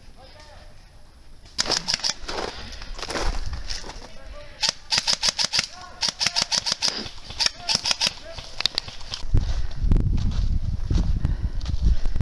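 Airsoft guns firing in quick strings of sharp cracking shots, several runs of rapid shots from about a second and a half in. Near the end a heavy low rumble on the microphone takes over.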